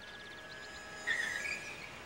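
Quiet outdoor background with faint rapid high ticking. About a second in comes a short high chirp that rises slightly in pitch.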